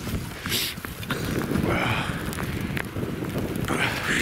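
Wind buffeting the microphone in a snowstorm, a gusty low rumble, with the scattered crunch of footsteps and rustle of clothing and packs as the walkers move.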